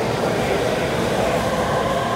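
Electric commuter train moving past the station platform: a steady loud rail rumble with a faint motor whine.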